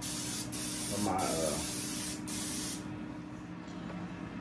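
Aerosol olive oil cooking spray hissing into a frying pan in several bursts with brief breaks, stopping just under three seconds in.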